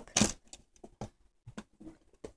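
A few faint, scattered clicks and taps from things being handled, after one short louder burst just after the start.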